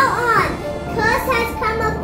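A child speaking over background music.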